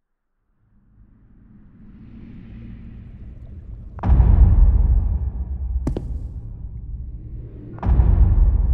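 Cinematic trailer sound design: a deep rumble swells up out of silence, then a loud low boom hits about four seconds in and rumbles on as it fades, a short sharp click sounds in between, and a second deep boom lands near the end.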